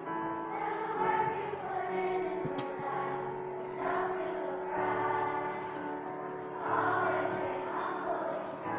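Children's choir singing a song together over musical accompaniment, with sustained sung notes over steady low notes.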